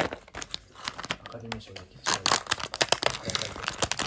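Foil-lined paper wrapper of a Fue Ramune candy pack being torn open and crinkled by hand, crackling most densely in the second half.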